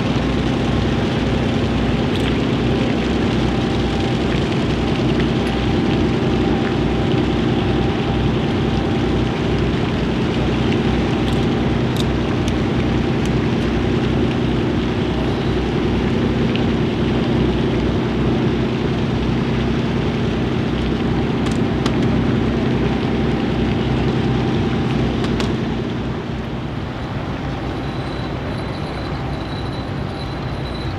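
The machinery of the steamship SS Alpena running as she passes close by: a steady, loud low hum made of several held tones over a fast low pulsing. It drops to a lower level near the end.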